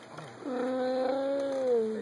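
One drawn-out, meow-like cry, starting about half a second in and holding a steady pitch for about a second and a half before sliding down at the end.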